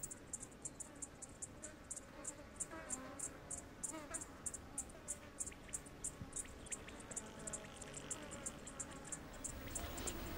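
An insect chirping in a steady rhythm of short, high-pitched pulses, about five a second, over a faint background hush.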